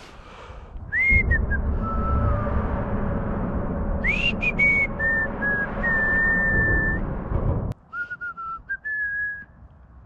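A man whistling a little tune: short notes that swoop up and longer notes that are held. A low rumbling noise runs under it for most of the time and cuts off suddenly about three-quarters of the way through, while the whistling carries on.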